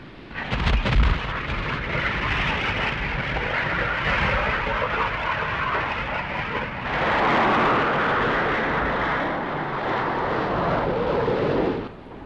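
Jet engines of Buccaneer and Phantom aircraft running at high power during launches from an aircraft carrier: a steady, loud rush of noise. A low thud comes about a second in, and the noise grows louder about seven seconds in for a couple of seconds.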